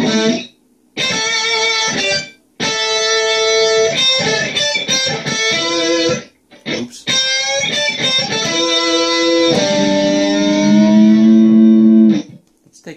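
Distorted electric guitar through a pitch-shift effect, playing a solo phrase of long sustained notes with a few short breaks and some quicker notes in the middle. Near the end a held note bends slowly upward.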